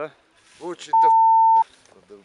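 A single steady electronic beep, one pure tone, starting about a second in and lasting under a second, cutting in and out abruptly over the voices: a censor bleep laid over a spoken word.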